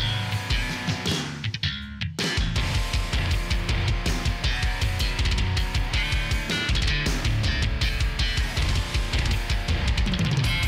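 Deathcore song playing: electric guitars with very fast drumming. The low end drops out briefly about two seconds in, then the full band comes back in.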